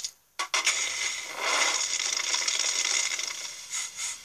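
A few sharp clicks, then a dense crackling hiss for about three seconds as a heap of discarded electronics is set alight and burns.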